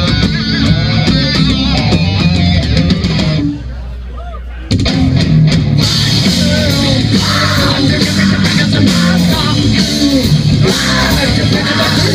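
A heavy rock band playing live, heard from within the audience: distorted electric guitars, bass, drums and a singer. About three and a half seconds in, the band drops out for about a second, leaving only a low held note, then everyone comes back in together at full volume.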